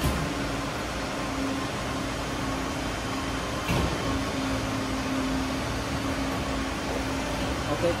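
Hydraulic power pack of a 100-ton coin press (electric motor driving a piston pump) running with a steady hum and a held whining tone, with a single knock about 3.7 s in as the ram cycles.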